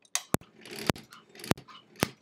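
Sewing machine stitching slowly around a raw-edge appliqué, one stitch at a time: three short runs of the motor, each ending in a sharp click, about two every second.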